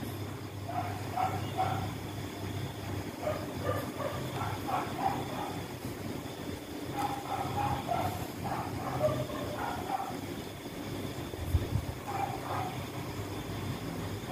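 A steady low background hum, with faint short pitched sounds in small groups every few seconds and a single low thump near the end.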